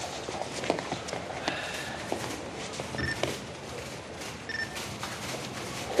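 Indoor room ambience with scattered small knocks and shuffling, as of people moving and settling into chairs, and two brief faint tones a second and a half apart.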